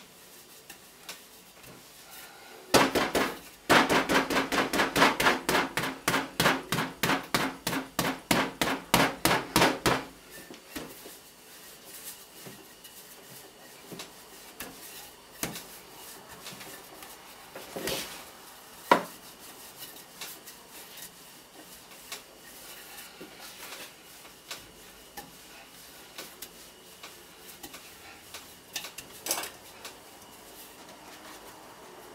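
Wooden rolling pin knocking against the worktop as laminated croissant dough is rolled out: a quick, loud run of knocks, about five a second, from about three seconds in to about ten seconds, then only a few scattered knocks and thumps.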